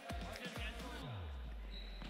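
Background music with a deep, regular kick-drum beat, then a long bass note that slides down and holds, with faint voices.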